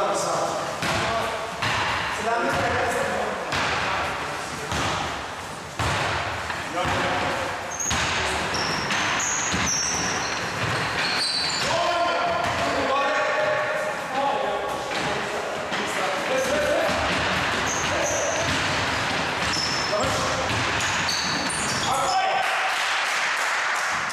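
Basketball bouncing and being dribbled on a wooden gym floor during a game, repeated thuds throughout, with players shouting in the reverberant hall.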